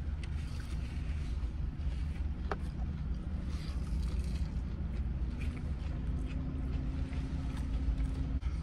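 Steady low rumble of a parked car running, heard inside the cabin, with a faint steady hum joining about five seconds in. Faint crinkles of a paper food wrapper and chewing sit over it.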